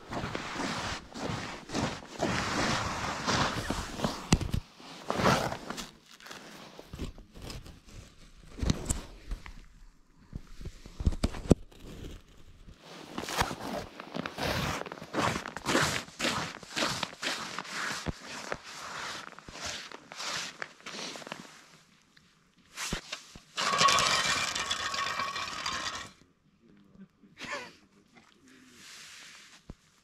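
Irregular crunching and scraping of boots on snow-dusted ice, with a denser rustling burst about three-quarters of the way through before it goes faint.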